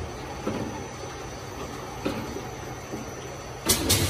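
Automatic detergent bottling line running: a steady machine hum from the jug conveyor and filler, with a few light knocks, then a sharp cluster of loud clicks near the end.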